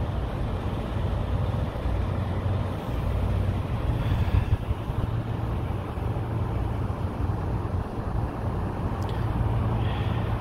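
A semi truck idling: a steady low diesel rumble that runs on evenly without changing pitch.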